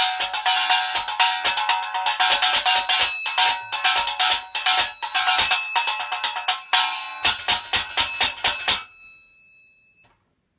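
Junk-percussion hi-hat made from a cutlery drainer and an alarm bell, struck with drumsticks in a fast run of strokes, giving a metallic fizz with a bell ringing through it. The playing stops about nine seconds in and a single bell tone rings on briefly.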